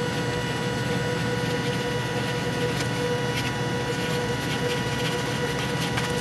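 A steady hum with a few fixed tones, joined by several faint short taps or rustles.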